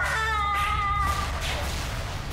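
A woman's long, high, wavering wail of grief, fading out a little over a second in, over steady background music.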